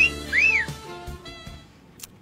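A two-part wolf whistle, a quick upward sweep then a rising-and-falling sweep, over a held musical chord that fades away.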